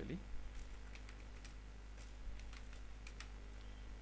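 Computer keyboard typing: a run of irregular keystroke clicks over a steady low electrical hum.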